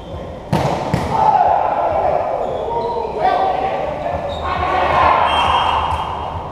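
A volleyball hit hard twice in quick succession about half a second in, followed by players shouting and calling over one another, echoing in a large covered hall.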